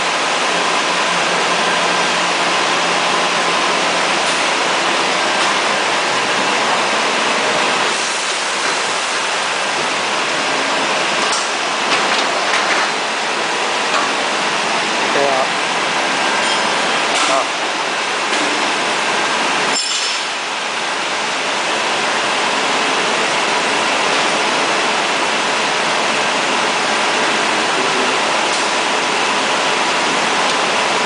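Steady loud rushing noise of factory machinery around a high-frequency plastic welding machine, with a few faint clicks and knocks.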